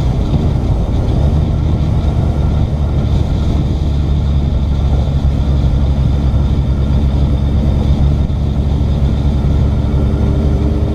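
Heavy wind roar on a motorcycle-mounted camera while riding at road speed, with the motorcycle's engine running underneath as a steady low rumble.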